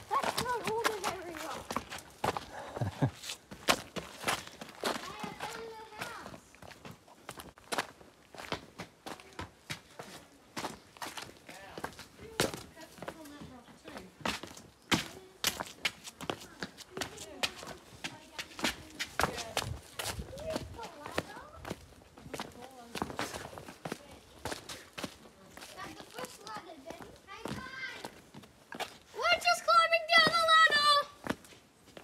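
Footsteps scuffing and crunching over rock and loose stones on a hiking trail, irregular steps throughout, with voices now and then and a child's voice near the end.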